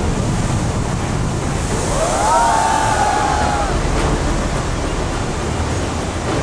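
Strong wind buffeting the microphone over the wash of sea surf. In the middle a drawn-out high-pitched sound rises, holds and falls away over about two seconds.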